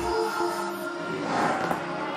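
Live pop band music: held synthesizer chords, with no drum hits.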